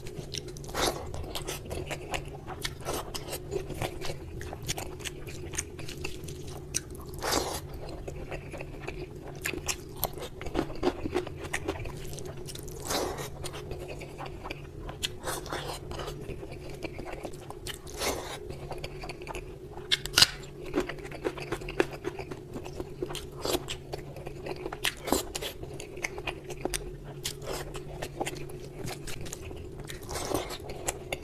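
Close-up sounds of eating by hand: fingers mixing rice and egg curry on a platter, and chewing, with many short sharp clicks and smacks throughout. A steady low hum runs underneath.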